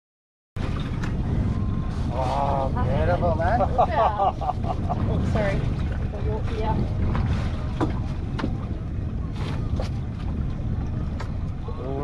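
Wind buffeting the microphone on an open boat at sea, a steady low rumble that starts suddenly after half a second of silence, with indistinct voices calling out briefly a couple of seconds in.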